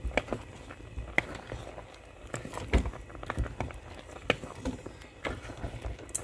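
Wooden spoon stirring thick ogbono soup in a metal pot, with irregular knocks and scrapes of the spoon against the pot about once or twice a second.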